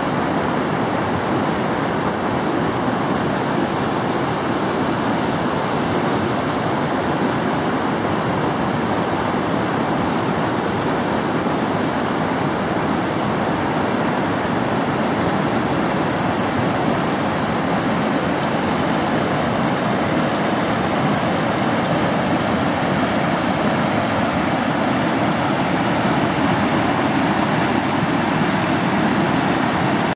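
A shallow, fast-flowing river rushing over rocks and boulders: a steady rush of water.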